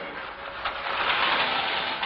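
Car engine running, heard as a steady rushing noise that grows louder a little over half a second in.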